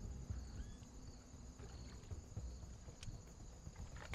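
Quiet open-air ambience: a low wind rumble on the microphone under a faint steady high-pitched hum, with two faint short whistle-like glides about half a second in and a single faint tick about three seconds in.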